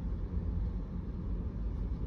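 Steady low rumble of road traffic, with tractor-trailers going by on the road ahead.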